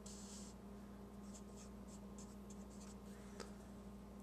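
Felt-tip marker drawing on paper: faint, short scratchy strokes in two runs, over a faint steady hum, with one small click late on.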